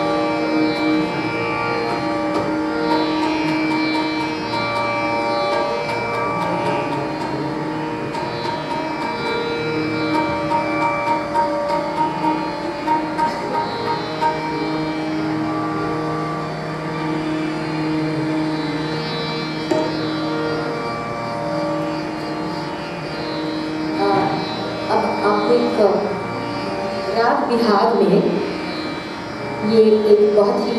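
Indian classical ensemble music: long, held melodic notes on violin and harmonium, with tabla accompaniment. In the last few seconds the vocalist sings gliding phrases over it.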